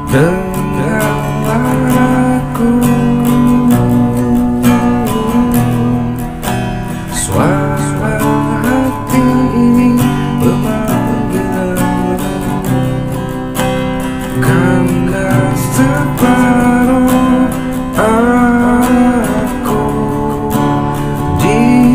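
A man singing to strummed acoustic guitar.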